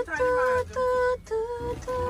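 A high voice singing or chanting one steady held note over and over, in short phrases of about half a second with brief breaks between them.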